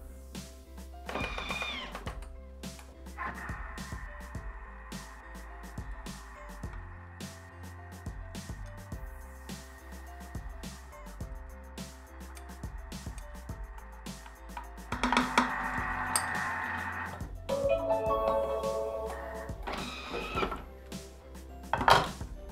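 Background music, with a Bimby (Thermomix) kitchen machine running underneath at speed 3 from about 3 s to 17 s, a steady whir while mascarpone is beaten into the whipped egg yolks.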